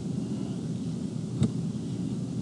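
Low, steady rumbling room noise on the lecture microphone, with one sharp click about one and a half seconds in.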